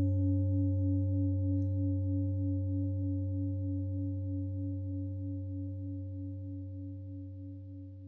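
A singing bowl ringing out as the last sustained note of the track: a low hum with a few higher overtones and a gentle pulsing waver, slowly fading away.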